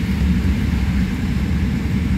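Steady low road and tyre rumble heard inside the cabin of a moving car.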